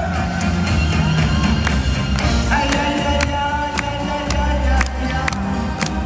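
Live band playing an instrumental passage of the song with a steady beat of about two drum hits a second, and sustained chords coming in about two and a half seconds in. Crowd noise runs underneath.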